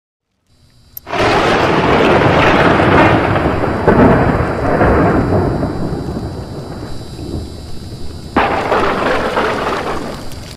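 Rumbling, thunder-like sound effect for an animated logo intro: a sharp crack about a second in, then a loud rumble that slowly fades, and a second sudden surge near the end.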